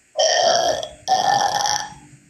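Two rough, noisy vocal sounds from a person, one right after the other, each lasting a little under a second.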